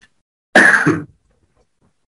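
A man clears his throat with one loud cough, about half a second long, starting about half a second in.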